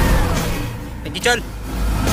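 Dramatic background film score whose held tone slides down in pitch at the start, with a short pitched vocal cry about a second in.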